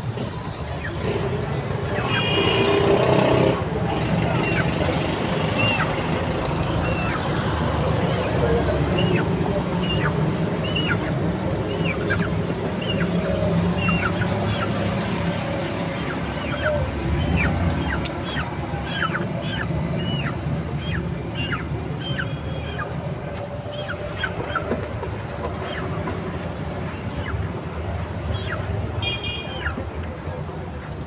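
Many short, high chirps from small birds, repeating about once or twice a second, over a steady low rumble of street traffic.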